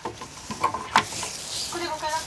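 Hands turning and handling the tuning machines on a classical guitar's headstock: a rustling scrape with small clicks, one sharp click about a second in.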